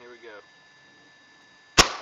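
Benjamin Nitro Piston XL 1500 gas-piston break-barrel pellet rifle firing a single shot near the end: one sharp, loud crack with a short fading tail.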